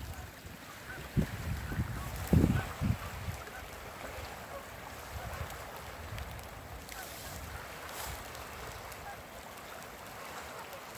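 Wind buffeting the microphone in low rumbling gusts through the first three seconds, then a steady outdoor hiss of wind with faint, scattered bird calls.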